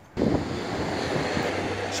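A steady rushing noise that cuts in suddenly just after the start.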